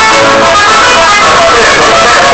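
Music: plucked guitar accompanying a singing voice.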